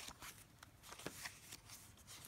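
Faint paper rustling and a few soft ticks as thick, stuffed journal pages are turned by hand.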